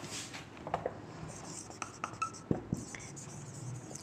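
Faint sounds of handwriting: light scratching with a few scattered clicks and short high squeaks.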